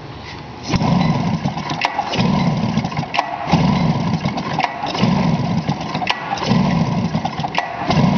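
A 1996 Polaris XCR 600 two-stroke triple being cranked over during a compression test, in about six separate one-second bursts with short gaps between them. A gauge is in the mag-side cylinder in place of the plug, and it builds to a healthy 138 psi.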